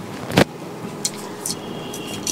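Handwoven Kani silk sari fabric rustling as it is handled and swapped, with one sharper, louder rustle about half a second in and a few lighter ones after.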